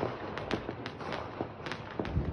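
Fireworks going off, a rapid, irregular string of sharp pops and cracks, several a second.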